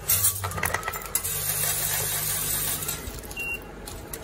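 A digital weighing particle-filling machine runs one 12-gram fill cycle. Its feeder motor hums while granules pour through the spout into a pouch as a dense hiss with small clicks. The sound starts suddenly and stops after about three seconds.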